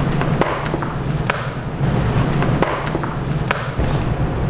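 Feet and a body thudding on a tiled floor in a series of irregular knocks and thumps, over a steady low hum.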